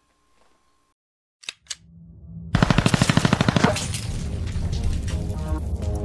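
Two sharp clicks, then a rapid burst of automatic gunfire about a second long, running straight into music.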